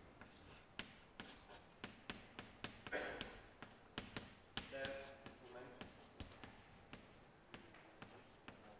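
Chalk on a blackboard as words are written: a faint, quick run of sharp taps and short scratches, about three strokes a second.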